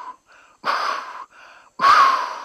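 Loud, hissing rushes of breath from a shaman's mouth pressed against a patient's bare belly in a healing treatment: one strong rush about half a second in, softer short breaths after it, and another strong rush starting near the end.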